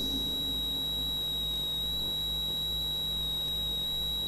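A steady high-pitched electronic whine over a low electrical hum, unchanging throughout: background noise of a microphone and sound-system or recording chain with nothing else sounding.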